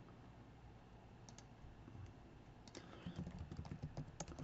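Quiet typing on a computer keyboard: a quick run of keystrokes in the last second or so, after a faint click or two about a second in.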